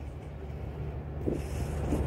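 Low, steady hum of a car heard from inside the cabin.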